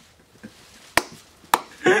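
Two sharp slaps about half a second apart during a fit of laughter, with laughter picking up again near the end.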